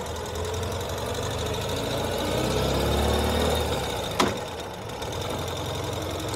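Ural Gear Up sidecar motorcycle's air-cooled boxer twin engine running as the bike rides at low speed, the revs rising for about three seconds and then easing off. A single sharp click comes about four seconds in.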